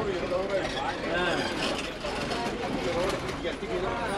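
Voices talking inside a moving vehicle, over the low rumble of its engine and road noise.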